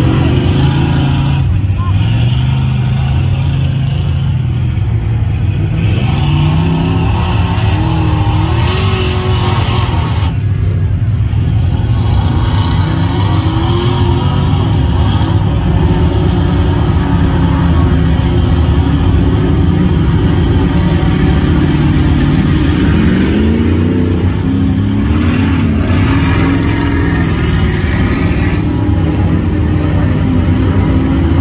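Lifted mud trucks' engines revving hard as they churn through a deep mud pit, the engine pitch climbing and dropping again and again.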